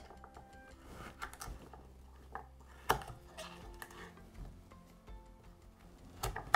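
Kitchen knife cutting through carrot pieces onto a wooden cutting board: a few sharp knocks, the loudest about three seconds in, over faint background music.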